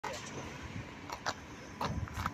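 Steady outdoor background noise. Three short, sharp sounds, two close together about a second in and one near the end, are typical of footsteps or small knocks.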